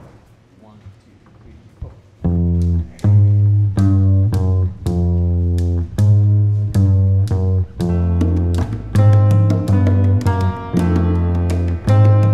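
Upright double bass, plucked, starts a Cuban-rhythm bass line about two seconds in, with sharp percussion strikes over it. More pitched instruments join in the second half.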